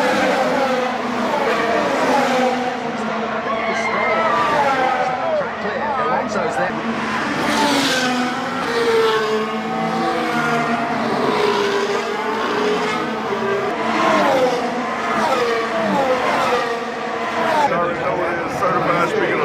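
Formula 1 cars' turbocharged V6 engines running at high revs as several cars race past one after another, their pitch sweeping up and down as they pass and shift gears, loudest about eight seconds in.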